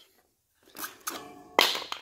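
Wooden spacer block pulled off a hand dolly's foot brake and dropped on a concrete floor: soft handling noise, then one sharp clack about a second and a half in.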